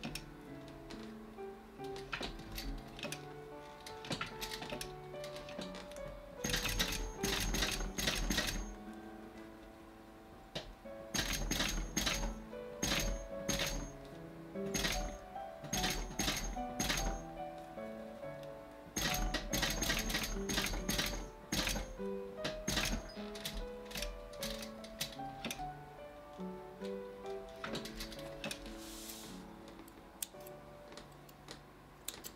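Industrial flat-bed sewing machine, a Mitsubishi LY2-3750, stitching leather in bursts of rapid clicking: several runs of a few seconds each, with short stops between. Background music plays throughout.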